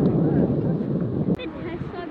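Outdoor wind rumbling on the microphone, with faint voices underneath. The rumble cuts off suddenly just under a second and a half in, leaving quieter voices.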